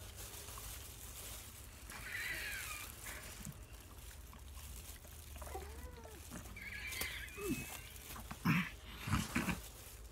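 Wordless, mouth-closed vocal noises from people tasting a Bean Boozled jelly bean they fear is rotten egg flavour. Faint high wavering squeaks come about two seconds in and again around seven seconds, then a few short low hums toward the end.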